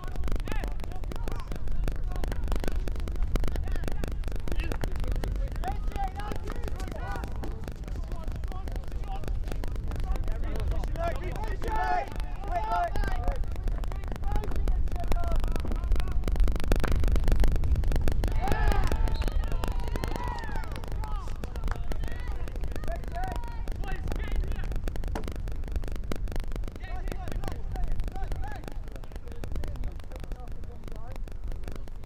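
Field hockey match ambience: players' scattered shouts across the pitch over a steady low rumble. The sound swells a little about two-thirds of the way through.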